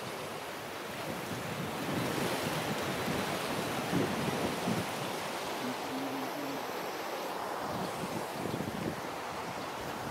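Steady rush of water spilling and splashing over small concrete weirs between fish-farm pools.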